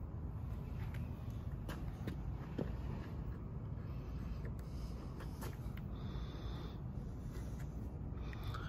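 Small clicks and taps of hands handling a plastic phone-mount clamp and its screw, scattered irregularly, with a brief scrape about six seconds in, over a steady low rumble.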